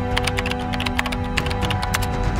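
Rapid keyboard-typing clicks, a sound effect for an on-screen caption being typed out letter by letter, over background music with steady held tones. The clicks stop near the end.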